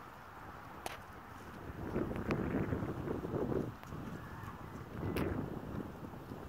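Wind buffeting the microphone in uneven gusts, strongest from about two seconds in and again briefly near the end, with a few faint clicks.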